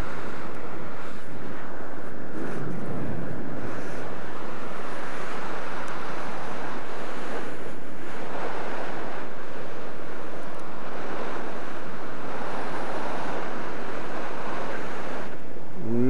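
Steady rushing of wind over the microphone during flight under an open parachute canopy, swelling slightly every few seconds.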